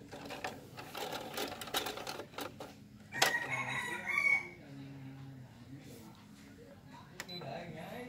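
A mini hi-fi's three-disc CD changer mechanism clicking and whirring as it changes discs. About three seconds in comes one brief, louder sound with a rising tone.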